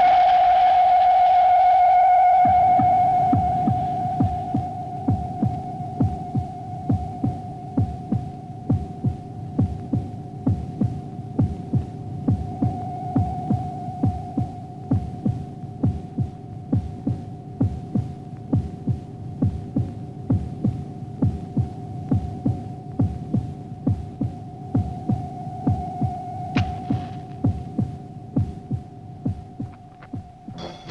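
Film soundtrack effect: a sustained high electronic tone, loudest at first, over a steady low throbbing pulse that starts a couple of seconds in and repeats at an even beat like a heartbeat.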